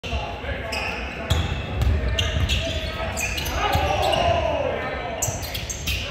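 Basketball game play in a gym: a ball bouncing on the hardwood court and sneakers squeaking, with repeated short sharp sounds and players' shouts echoing through the hall.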